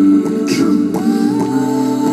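Layered, looped hummed vocal harmonies played back through a TC-Helicon vocal loop pedal, held as a steady chord. A short sharp percussive hit comes about half a second in, and a new voice slides up into a held note about a second in.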